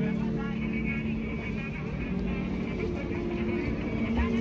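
Busy street background: a low, steady traffic rumble with people's voices and some held musical notes.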